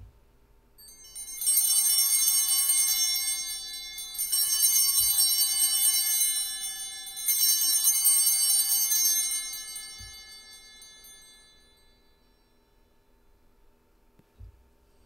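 Altar bells (a set of small Sanctus bells) shaken three times in succession, each ring a bright shimmering jingle that fades away after the third, marking the elevation of the consecrated chalice.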